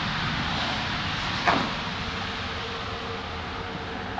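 A hand rummaging through crumbly worm-bin compost bedding on a plastic tray makes a steady rustling, crumbling hiss that eases off slightly, with a brief scrape about one and a half seconds in.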